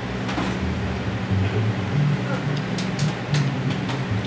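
Electric bass guitar playing a few low notes that step from one pitch to another, with a few light, sharp taps on the drum kit in the second half.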